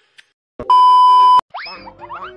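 A loud, steady censor-style beep tone lasting under a second, cutting in and out abruptly, followed near the end by a comic rising boing sound effect added in editing.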